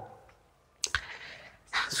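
Two sharp clicks a little under a second in, then a faint, brief rubbing as a cloth starts wiping the whiteboard.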